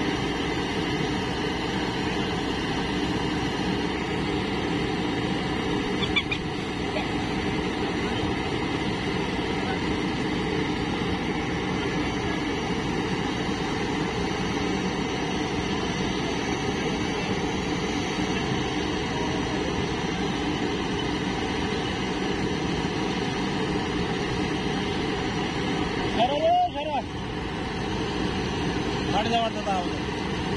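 Diesel engines of a Sonalika DI-740 III tractor and a JCB 3DX backhoe loader running steadily, the tractor standing idle while the backhoe digs. Near the end come two brief louder sounds with a sliding pitch.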